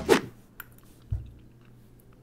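A person eating macaroni and cheese from a fork: a short loud rasp right at the start, then quiet chewing with faint small clicks and one low thud about a second in.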